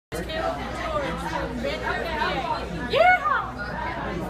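A boy gives a single loud 'yee-haw' shout about three seconds in, a whoop that rises and falls in pitch, over the chatter of other people's voices.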